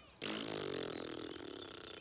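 A cartoon character blowing one long raspberry, tongue out and spluttering, starting just after the start and slowly dying away.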